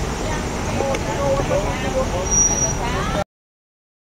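Indistinct voices talking over a steady low rumble of outdoor background noise. The sound cuts off abruptly to total silence a little over three seconds in.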